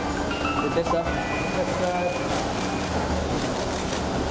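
Indistinct voices over a steady low background hum, with short scattered pitched sounds.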